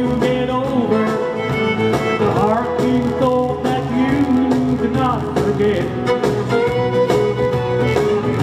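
Country band playing live: electric guitars over a steady rhythm, with a lead line that slides between notes, in an instrumental break. A sung word ends a line right at the start.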